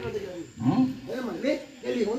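A man's voice speaking in a comedy skit's dialogue, its pitch swinging up and down, with a short break about half a second in.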